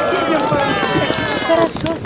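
A crowd of many voices shouting and cheering together in long drawn-out calls, with scattered claps, dying away about a second and a half in.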